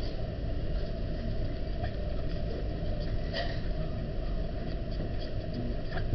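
Steady low rumble of room noise, with a faint click about three seconds in.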